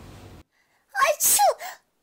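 Faint room tone that cuts off abruptly, then a short, loud vocal sound in two quick parts about a second in, the second part falling in pitch.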